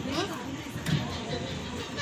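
Faint voices of people talking over a steady outdoor background noise.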